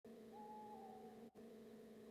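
Near silence: a faint steady droning tone, with a faint higher tone held for about half a second near the start.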